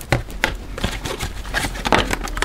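A deck of tarot cards being shuffled by hand: a quick, irregular run of soft clicks as the cards slide and tap against each other.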